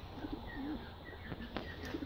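A bird cooing: two short, low, wavering coos, one near the start and one near the end, with faint high chirps of small birds behind them.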